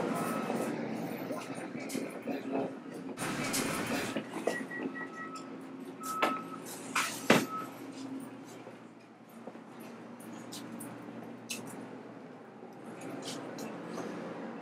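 Shop interior ambience: a steady low hum under indistinct voices, with scattered clicks and knocks and a few short electronic beeps about five seconds in.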